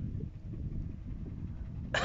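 A dog gives a short, wavering whine near the end, over a steady low rumble of wind on the microphone.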